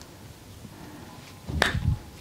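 A single sharp snap from the masseur's hands working a woman's outstretched arm, about one and a half seconds in, with dull thumps around it.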